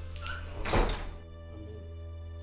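A wooden door being pushed shut, with a few small handle clicks and then one solid thud about three-quarters of a second in, over steady background music.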